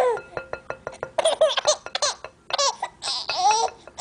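Baby girl laughing in several short, high-pitched bursts, with small clicks during the first two seconds.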